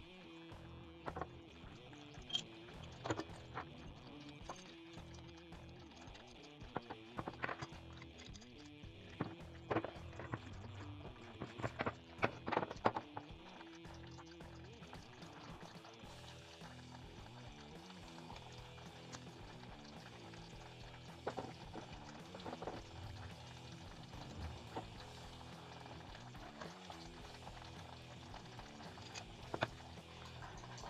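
Soft background music, with scattered sharp clicks and taps of metal pipe fittings being handled and screwed together. The clicks come most often about a third of the way through.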